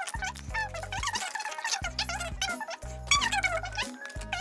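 Background music: a bouncy tune with held bass notes that change every half second or so, and quick sliding high notes over them.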